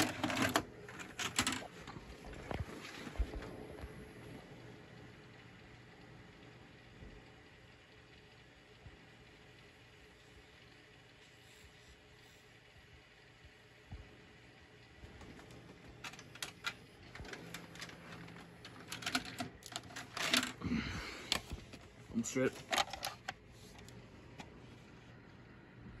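VHS cassette pushed into a Panasonic VCR: a quick run of clicks and clunks from the loading mechanism at the start, then a long, very quiet stretch with a faint hum. Past the middle come more scattered clicks and knocks of the machine and cassette being handled.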